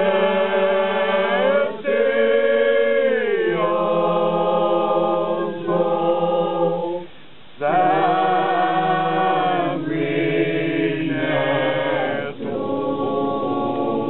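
Male choir singing a slow religious chant unaccompanied, in long held phrases with a brief pause about seven seconds in.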